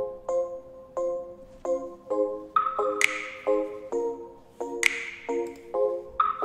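Pop beat playing back from Ableton Live: Glass Piano chords thickened with chorus, plucked in a repeating pattern about twice a second. A finger-snap sample with reverb hits twice, about three seconds in and again near five seconds, and a higher ping joins about halfway.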